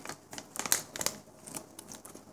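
Scissors cutting through a small cookie dough packet, with irregular snips and crinkling of the packet.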